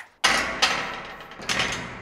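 Plate-loaded barbell clanking during standing shoulder-press reps: three sudden knocks, each fading away over about half a second.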